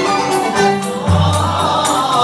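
Moroccan Andalusian (al-Ala) orchestra playing: men's voices singing together over violins, with the jingling of a tar frame drum and a deep low note coming in about a second in.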